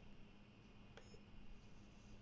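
Near silence: faint room tone with a low steady hum, and one faint click with a brief high tone about halfway through.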